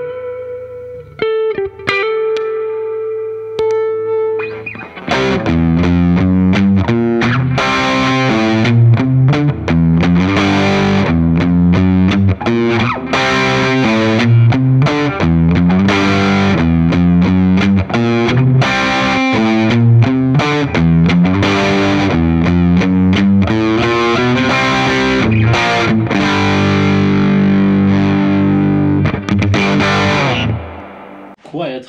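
Electric guitar: a 2008 Gibson Les Paul Standard Plus played through a Fender '65 Reissue Twin Reverb amp. A few single notes come first, one of them held and ringing. About five seconds in it turns into a loud, dense run of riffs and chords over a driving low-note rhythm.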